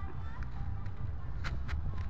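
Wind buffeting the microphone with a low rumble, and two sharp clicks close together about one and a half seconds in from a pocket lighter being struck.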